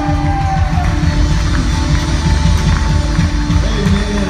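A live church band playing a worship song, with a Yamaha drum kit keeping time under held chords and bass.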